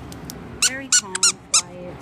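A yellow squeaky dog toy squeaked four times in quick succession, starting about half a second in.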